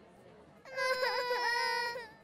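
Cartoon babies crying in a high, sustained wail that starts about two-thirds of a second in, its pitch dipping twice before it stops.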